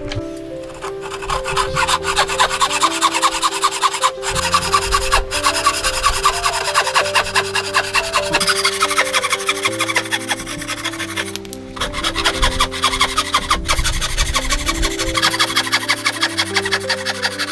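Thin-bladed frame saw cutting through a wooden block by hand, in quick, even strokes of about four a second that pause briefly twice. Background music with sustained notes plays throughout.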